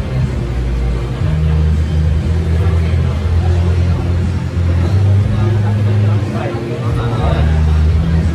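Loud, bass-heavy background music whose low notes change every second or two, with indistinct voices over it that become livelier near the end.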